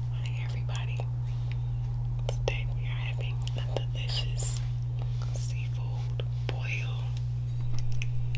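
A woman whispering close to the microphone, with small mouth clicks, over a steady low hum.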